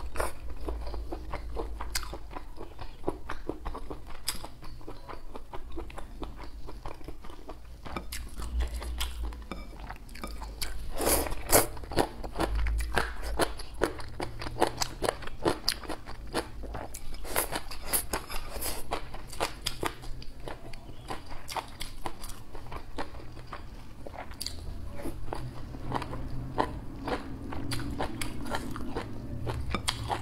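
Close-miked eating of spicy hot pot: a person chewing and biting mouthfuls of food, with many irregular wet, crunchy mouth clicks and smacks, busiest about a third of the way in.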